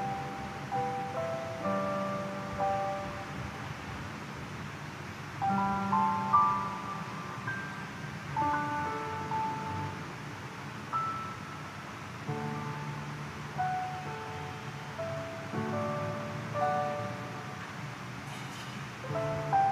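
Slow instrumental church music: a melody over held chords played on a keyboard, with new phrases starting every few seconds.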